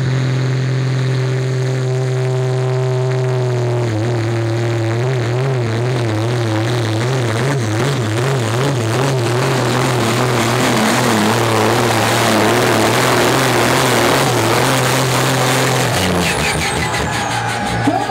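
Turbocharged International pulling tractor's engine held at high, steady revs, then running flat out through a pull, its revs wavering up and down as the noise builds. About two seconds before the end the engine note drops away as the pull finishes.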